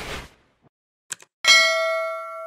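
Subscribe-button outro sound effects: a whoosh dying away at the start, a couple of quick clicks, then a single bright bell ding about a second and a half in that rings on and slowly fades.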